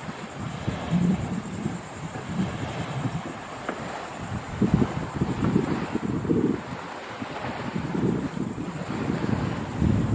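Wind buffeting the microphone in irregular gusts over a steady wind hiss.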